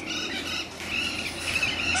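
Parrot calling: a drawn-out high call that wavers slightly in pitch through the second half, with shorter squawks before it.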